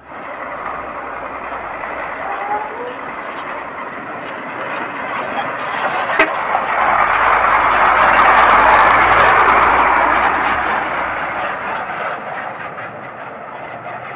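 A diesel dump truck drives past on a gravel dirt road, its engine and tyres crunching on the gravel. The sound grows as it approaches, is loudest as it passes about eight seconds in, then fades as it pulls away.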